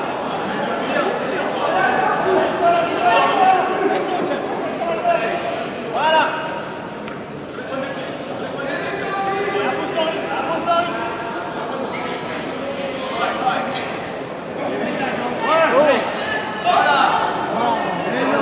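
Many voices talking and calling out in a large echoing sports hall, with louder calls about six seconds in and again near the end.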